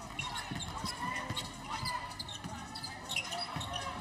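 Basketball dribbled on a hardwood arena floor, a string of bounces, with short high squeaks of sneakers and indistinct voices echoing in the hall.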